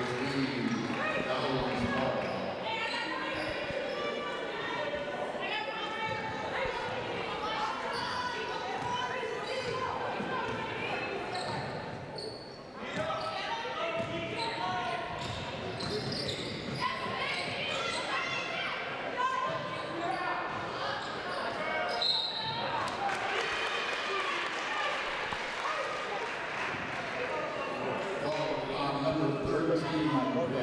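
Basketball bouncing on a hardwood gym floor, with players' and coaches' voices calling out and echoing through the gym.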